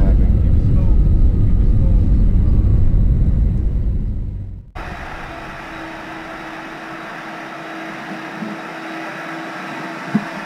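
Airliner cabin rumble from a plane rolling on the ground, loud and deep, easing off a little before the middle. It then cuts sharply to an airport terminal hall's hiss with a steady low hum.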